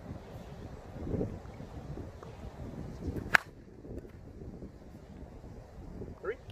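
A 2021 DeMarini Vanilla Gorilla slowpitch softball bat, with its 12-inch APC composite barrel, hitting a softball once with a single sharp hit about three seconds in.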